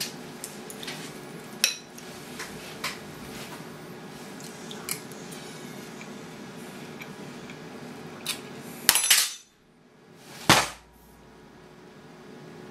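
A metal spoon clinking against a ceramic cereal bowl, a sharp click every second or so while eating. Near the end comes a loud clatter and then one heavy thump as a face drops into the bowl.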